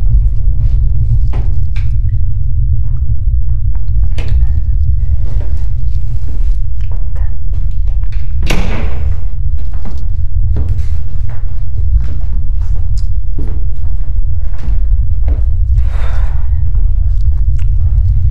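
A loud, steady deep rumble, with scattered thumps and knocks over it and two louder rushing bursts, one about halfway through and one near the end.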